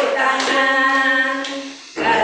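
Group of women singing a children's action song in unison, holding one long note that fades just before the end, with two hand claps at the start.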